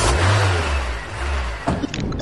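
A car engine starting as the ignition key is turned: a rush of noise over a low engine note that climbs, then holds and fades away, with a few clicks near the end.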